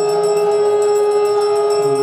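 Hindu devotional ensemble music: one long held note with a lower line shifting in pitch beneath it, over a quick, steady jingling rhythm.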